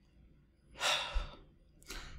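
A man's single sigh, a breathy exhale lasting under a second, about a second in.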